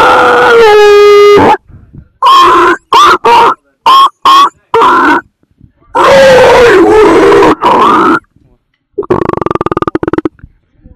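A person's voice making loud, distorted vocal noises in bursts: a held high note lasting about a second, a string of short yelps, a longer wavering yell, and a buzzing rasp near the end.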